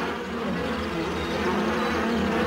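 Cartoon sound effect of a swarm of insects buzzing steadily.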